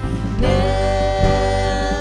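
Live worship band with drums, guitar and grand piano under singers; about half a second in the voices slide up into one long held note.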